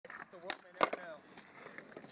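Faint, brief talking with two sharp clicks in the first second.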